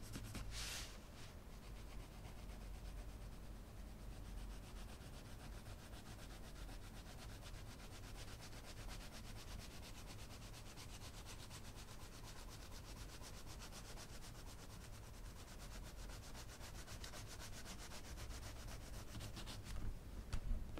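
Arteza coloured pencil scratching faintly across coloring-book paper in quick, even back-and-forth strokes, laying a first light-pressure layer of periwinkle blue.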